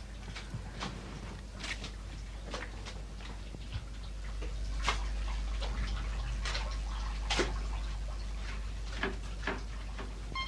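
Scattered light clinks and knocks of kitchen utensils being handled, irregular and a few seconds apart, over a steady low hum.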